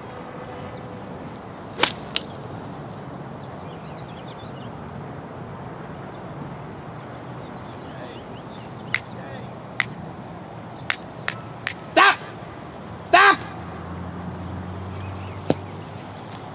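A golf ball struck off dormant turf with a 60-degree wedge: one sharp crack about two seconds in, with a fainter click just after. Then steady outdoor air with a few light clicks and two short vocal exclamations near the end.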